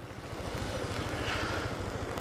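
Yamaha motorcycle engine idling, a steady low pulsing run.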